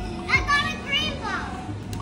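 A young child's high-pitched voice calling out in play, rising and falling in pitch, over background music.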